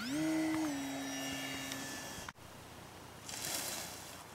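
Electric motor of a radio-controlled model plane spooling up with a quick rising whine, holding steady, dropping slightly in pitch, then cutting off about two seconds in. A brief hiss follows near the end.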